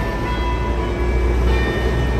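City street traffic with a bus and a truck passing: a steady low engine rumble with a few faint steady whines above it.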